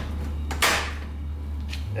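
Removable e-bike battery pack sliding along its mount on the frame, one short scraping slide about half a second in, over a steady low hum.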